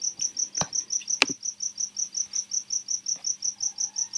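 A cricket chirping steadily, rapid evenly spaced high pulses. Two sharp clicks sound in the first second and a half.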